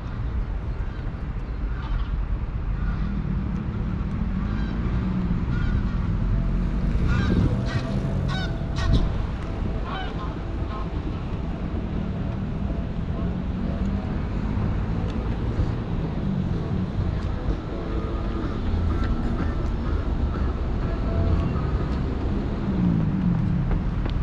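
Outdoor street ambience: a steady low rumble of traffic and wind on the microphone, with voices of passers-by and a few honks, busiest a few seconds in.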